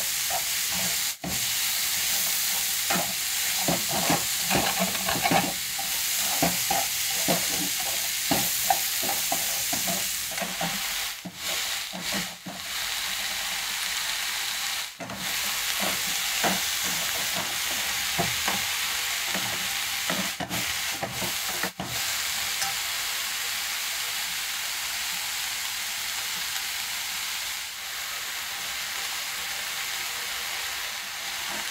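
Stir-fried vegetables sizzling in a hot frying pan, stirred and tossed with wooden chopsticks that clatter and scrape against the pan, busiest in the first ten seconds. The sizzle then runs on more steadily, with a few brief breaks.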